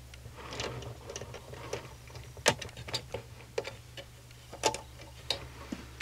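Irregular light clicks and taps of hard plastic as hands work yarn across the pegs of a plastic double-knit loom and shift the loom, with a sharper click about halfway in. A steady low hum runs underneath.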